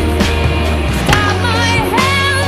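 Inline skate sounds, the wheels rolling and a sharp clack about halfway through, over a song with singing.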